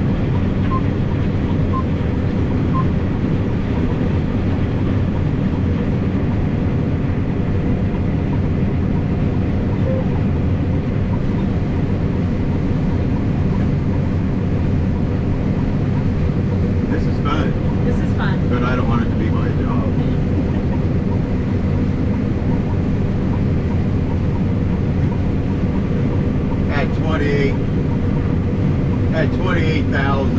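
Combine harvester running steadily while cutting soybeans, heard from inside the cab as a constant low machine drone. Brief low voices come in around the middle and near the end.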